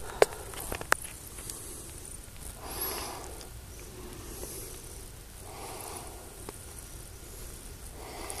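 Quiet outdoor background with faint handling noise: a few sharp clicks in the first second, then two soft, breathy rushing sounds about three and six seconds in.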